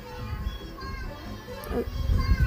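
Faint background voices and music under a low rumble, much quieter than the nearby narration.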